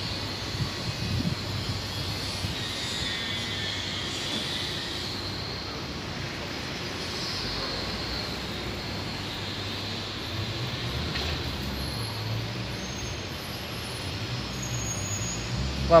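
Steady urban background noise of distant road traffic, with no single sound standing out.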